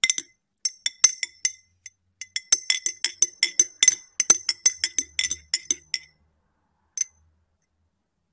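Metal teaspoon stirring tea in a ribbed glass tumbler, clinking against the glass in quick, ringing strikes that come thickest in the middle. After a pause there is one last clink near the end.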